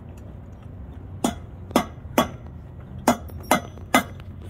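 Sharp metallic taps on a trailer wheel hub, six strikes spaced about half a second to a second apart, each ringing briefly: a hand tool striking a bearing race to seat it in the hub.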